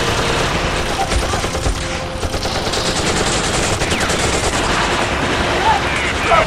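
Sustained rapid automatic rifle fire from several guns at once, a dense continuous fusillade, with a brief shout near the end.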